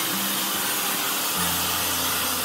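Handheld hair dryers blowing on hair: a steady, loud rush of air over a low motor hum that shifts in pitch about halfway through.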